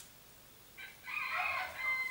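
A rooster crowing once, a single drawn-out call that begins about a second in.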